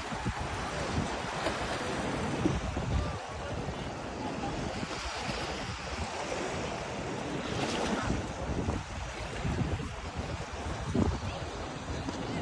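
Wind gusting over the phone's microphone, with small lake waves washing onto the sand.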